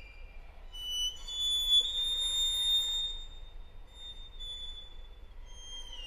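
Solo violin holding very high, thin sustained notes: the pitch steps up about a second in, swells louder and holds, then steps down again later on.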